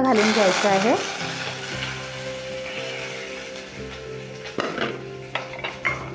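Curry leaves and green chillies dropped into hot oil with tempered mustard and cumin seeds, sizzling loudly in the first second, then settling to a steady sizzle. A few sharper clicks come near the end.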